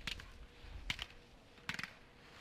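A few sharp clicks in small clusters, one at the start, two about a second in and a quick run of three or four near the end, over faint background hiss.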